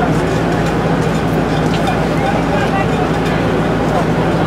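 Steady low engine hum in busy outdoor street ambience, with faint voices in the background.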